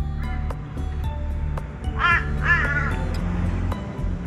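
Two harsh caws from an Australian crow, about two seconds in, over steady background music.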